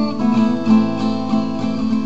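Acoustic guitar strummed in a steady rhythm, about three strokes a second, the chords ringing between strokes.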